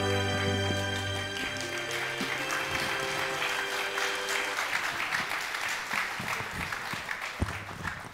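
Walk-on music with held notes fading out over the first few seconds, as audience applause rises and carries on to the end.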